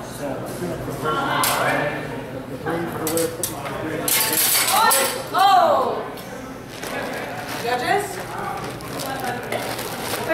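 Steel rapier and dagger blades clinking against each other in a sword-fighting exchange, a few short metallic clicks, with voices around them.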